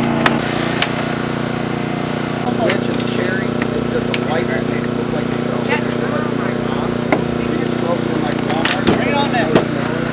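Hydraulic rescue tool (jaws of life) at work on a car: the power unit drones steadily throughout, with a few sharp metallic snaps and clanks as a roof pillar is cut and the roof is bent back.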